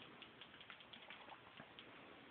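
Near silence: faint room tone with a few light ticks.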